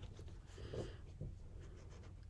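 Faint rustling of tarot cards being handled on a table, with a few light ticks.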